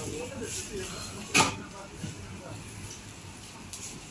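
Faint background voices and kitchen noise at a street-food counter, with one sharp click about a second and a half in.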